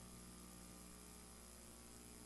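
Near silence: a faint, steady electrical mains hum with light hiss on an idle feed carrying no programme sound.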